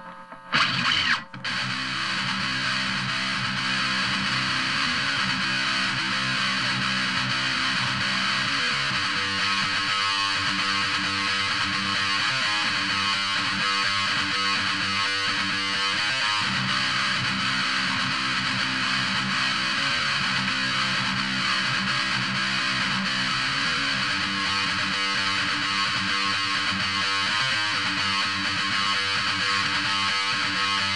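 A couple of sharp knocks in the first second and a half, then a solo electric guitar playing a melodic metal lead part continuously, with no rhythm guitar behind it.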